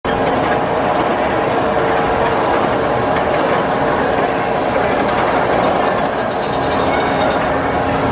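Arrow mine-train roller coaster running on its tubular steel track, a steady loud rumble with a thin steady whine running through it.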